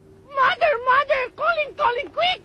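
Speech only: a high-pitched voice saying a quick run of short syllables that rise and fall in pitch.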